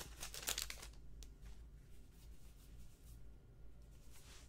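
Plastic wrapper of a 2017 Topps Archives baseball card pack crinkling and tearing as it is opened by hand, loudest in the first second, followed by faint handling of the cards.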